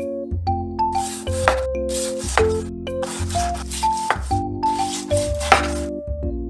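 Small knife slicing raw salmon on a wooden cutting board: about half a dozen short rasping strokes, starting about a second in. Light background music with mallet-percussion tones plays throughout.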